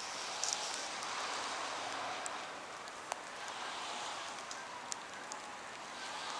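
Steady rushing hiss of water from a tidal bore's breaking front moving up the river, swelling and easing slightly, with a few sharp clicks scattered through it.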